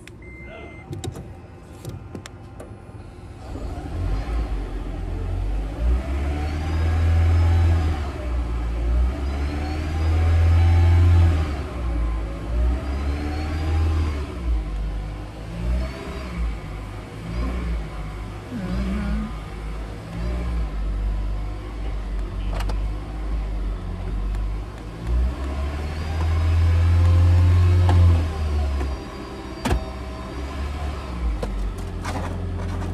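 Car engine revved repeatedly by pumping the accelerator pedal, heard from inside the cabin. The engine note starts a few seconds in and rises and falls over and over, with three longer, louder surges.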